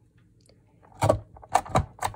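Envelope punch board's punch pressed down through a sheet of glassine: a sharp clack about a second in, then two or three louder clacks in quick succession near the end.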